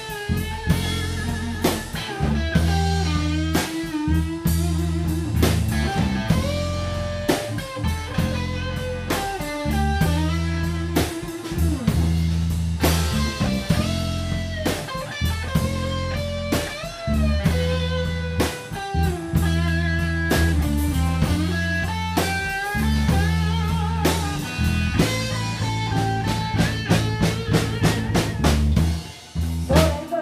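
Live blues-rock band playing an instrumental passage: an electric guitar lead with bent, wavering notes over electric bass and a drum kit. There is a brief drop near the end before the band comes back in.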